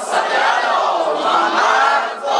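Many voices, a crowd with boys among them, chanting and calling out together in a Muharram mourning chant.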